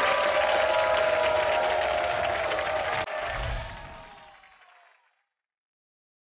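Studio audience applauding over closing theme music. The applause cuts off suddenly about three seconds in, and the music fades out over the next two seconds.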